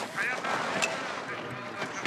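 Racing skis running fast over hard, icy snow: a steady hiss, with a faint voice briefly behind it.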